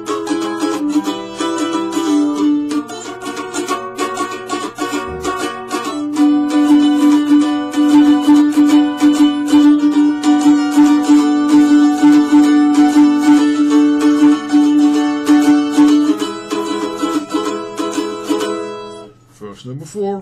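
Mandolin strummed in chords, a quick steady run of strokes starting on an A chord, with the notes ringing on; the playing stops about a second before the end.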